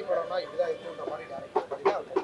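Indistinct voices of people talking in the background, with a quick run of four or five short, sharp pitched calls near the end.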